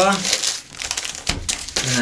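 Plastic wrapping crinkling around a netbook as it is pulled out of its foam packing and handled, with a soft knock about a second in as it is set down on a wooden table.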